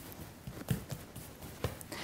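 Quiet knocks and taps from a fluted scone cutter being pressed down through soft dough onto a worktop while the last scone is cut out and moved to the baking tray. The two clearest knocks come about a second apart.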